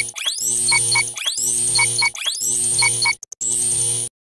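Countdown intro sound effect. A rising electronic whoosh with a pair of short beeps repeats about once a second, four times, with a brief dropout near the end.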